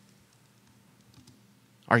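A few faint, light clicks and taps over a low background. A man's voice starts right at the end.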